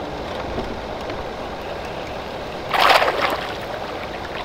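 A hooked crappie splashing at the water's surface as it is reeled toward the boat, one loud splash about three seconds in, over a steady background of lapping water and wind.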